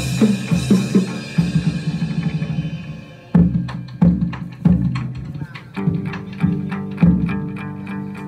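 Chầu văn ritual music: quick drum strokes at first, then heavier beats about twice a second with sharp clicks from about three seconds in, and plucked lute notes joining about six seconds in.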